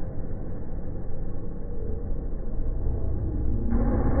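Freestyle motocross dirt-bike engines running at a distance under a steady low rumble; near the end a brighter, louder engine note comes in.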